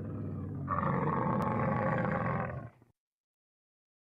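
A camel grunting: one long, low, rough call that grows louder and harsher about two-thirds of a second in and stops about three seconds in.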